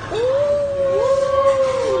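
Women's voices holding a long, steady "oooh", with a second voice joining about halfway through.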